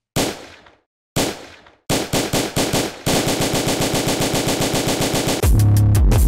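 Electronic music build-up: two heavy, echoing hits a second apart, then a roll of quick hits that speeds up into a fast rattle. About five and a half seconds in it drops into loud, bass-heavy electronic music.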